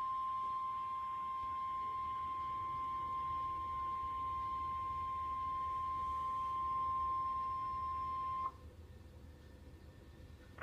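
NOAA Weather Radio 1050 Hz warning alarm tone: one steady high tone that cuts off suddenly about eight and a half seconds in. It signals that a new warning broadcast follows.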